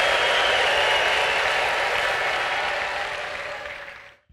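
Large congregation applauding, a dense steady clapping that fades away over the last two seconds.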